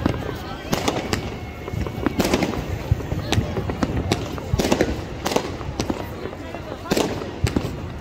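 Aerial fireworks going off in an irregular series of sharp bangs, about one or two a second, over a continuous crackle and rumble.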